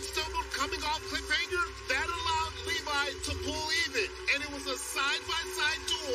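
Sports commentary over background music, with voices running throughout.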